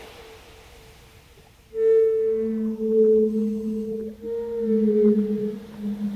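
Wooden Native American-style flute playing long held notes, starting about two seconds in, with a lower tone held an octave beneath.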